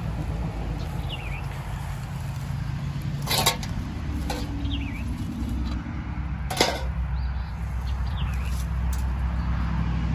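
Two sharp clicks of old bricks knocking together as loose bricks are handled, one about three seconds in and one about six and a half seconds in. Under them runs a low steady rumble, with a few faint bird chirps.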